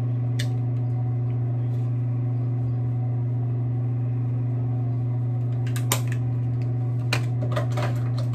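A steady low electrical hum fills the room, constant in pitch and level. A few light clicks and taps come about half a second in and again over the last two seconds, as the makeup brush and compact are handled.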